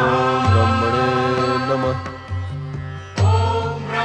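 Devotional background music with a chanted mantra over long held notes; a new phrase begins loudly a little after three seconds in.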